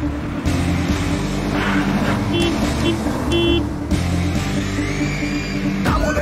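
Film background score over the running engine of a KSRTC bus as it approaches. Three short horn honks come in the middle.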